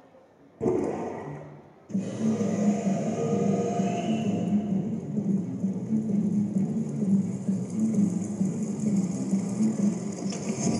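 The performance soundtrack over the hall's speakers: a sudden hit that fades, then about two seconds in a dense, steady low sound sets in and keeps going.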